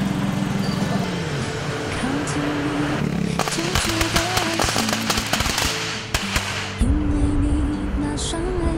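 A string of firecrackers crackling in rapid bursts for about three seconds, starting a few seconds in, over background music.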